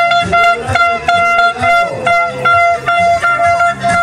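Plastic toy trumpets blown in a run of short toots on one steady pitch, about two a second, with crowd voices underneath.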